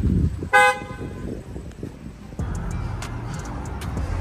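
A single short car horn honk about half a second in.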